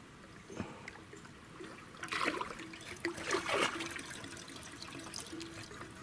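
Water sloshing around legs wading in shallow, muddy water, with two louder splashes about two and three and a half seconds in.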